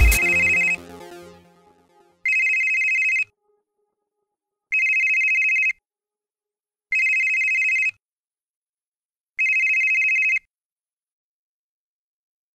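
Electronic music cuts off in the first second, its tail dying away; then an electronic telephone ringtone sounds four times, each high-pitched ring about a second long with about a second and a half between rings.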